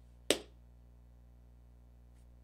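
A single sharp click or snap about a third of a second in, over a low steady electrical hum.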